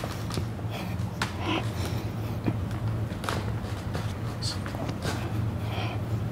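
Scattered faint scuffs and small knocks of feet shifting on a wooden floor and clothing rustling as two people grapple in push hands, over a steady low hum.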